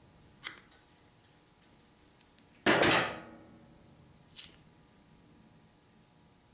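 Diagonal cutters snipping through a nylon starter pull cord with a sharp click about half a second in, followed by a few faint ticks of handling. A little before halfway comes the loudest sound, a sudden knock with a short ringing tail as the cutters are set down on the metal bench, and a second sharp click about four and a half seconds in as a lighter is struck.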